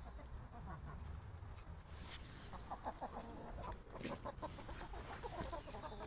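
Chickens clucking, a run of short, faint clucks that starts about halfway through.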